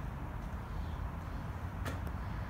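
Steady low outdoor rumble with no distinct events, and a single sharp click near the end.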